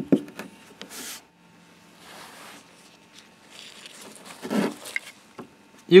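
Workbench handling noises: a sharp knock at the very start, then a few light clicks and two stretches of soft rustling and rubbing.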